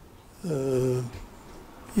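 A man's brief hummed hesitation sound, a drawn-out "mmm" under a second long, that dips in pitch and then holds, between pauses in speech.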